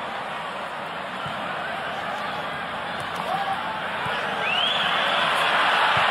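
Stadium crowd noise at a football match, a steady hubbub that grows louder over the last couple of seconds. A short rising whistle comes through about four and a half seconds in.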